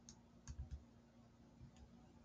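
Faint clicks of calculator keys being pressed: three quick presses about half a second in and two more near the end.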